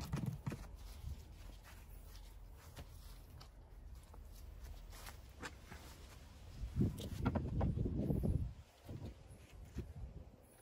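Scattered light clicks and knocks of a quick-release bar clamp being worked and tightened onto a long wooden handle blank on a wooden workbench, then a louder stretch of wood knocking and rubbing about two-thirds of the way through as the wood is handled.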